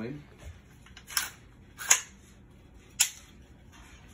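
Three sharp mechanical clicks, roughly a second apart and the middle one loudest, from the action of an unloaded Kel-Tec Sub-2000 9 mm carbine being worked by hand.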